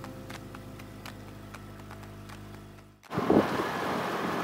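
Soft background music with a light ticking beat fades away. About three seconds in it cuts to a louder rush of wind and water over a small Honda outboard motor running on a dinghy under way.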